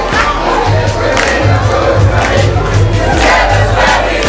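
A crowd of young people shouting and chanting together, over music with a steady pulsing bass beat.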